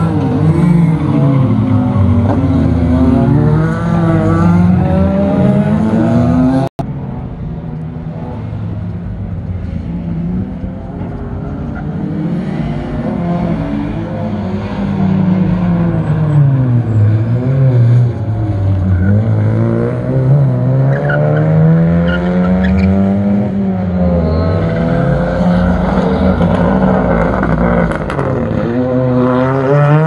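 Race cars lapping a circuit and passing close by, engines revving up and falling away through gear changes, several cars one after another. The sound drops out for an instant about seven seconds in.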